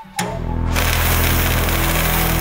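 Sound-design drone for an animated logo: a low, steady buzzing hum with a hissing fizz over it, starting about a quarter second in just after the music fades out.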